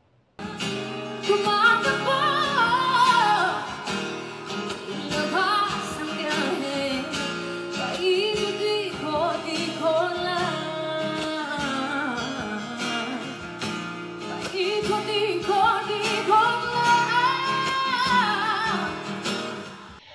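A woman singing a pop song live over acoustic guitar accompaniment, starting about half a second in.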